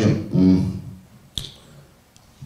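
A man's voice trails off, then a single sharp click sounds about a second and a half in, with quiet around it.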